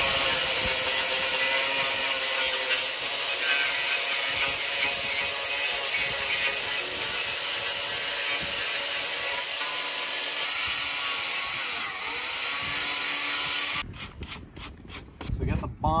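Angle grinder with a sanding disc grinding a rust spot on a truck's steel door down to bare metal: a steady motor whine over a rough scraping hiss. It stops about 14 seconds in, followed by a few light clicks.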